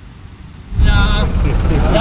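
Outdoor sound from a gathered crowd comes in suddenly about three quarters of a second in: wavering voices over a heavy low rumble.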